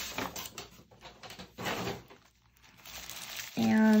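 Plastic bubble wrap crinkling and rustling as a wrapped package is handled. It comes as a few short bursts in the first two seconds, then dies away.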